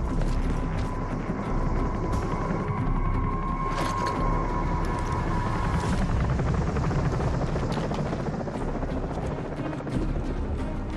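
Helicopter hovering overhead, its rotor beating steadily, under a music score that holds a high note for the first six seconds.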